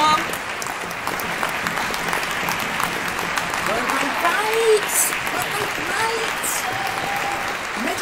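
Many people clapping at once, with scattered overlapping cheers and calls.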